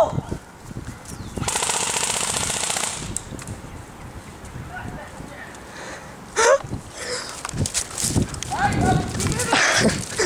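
Airsoft electric gun (AEG) firing a full-automatic burst of about a second and a half, starting about a second and a half in: a fast, continuous string of shots. Later come a few short sharp sounds and brief shouts.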